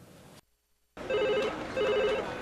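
A telephone rings with a rapid electronic trill, twice, starting about a second in after a brief moment of dead silence.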